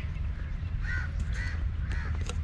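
A bird calling three times in short arched calls about half a second apart, over a steady low rumble.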